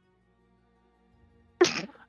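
Faint background music, then about a second and a half in a single short, sharp vocal burst from one person.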